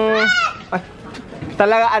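A man's voice holding a long drawn-out vowel, like a stretched exclamation or question, that rises in pitch and breaks off about half a second in; after a short pause, ordinary speech resumes near the end.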